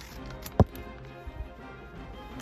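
Background music with one sharp, loud knock about half a second in and a couple of light clicks a little later, from a blind bag being handled.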